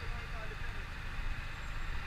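Low, steady rumble of city street traffic, with faint voices of people talking.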